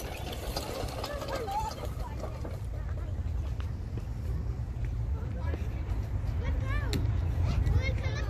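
Children's voices and calls, with high, bending calls near the end, over a steady low rumble.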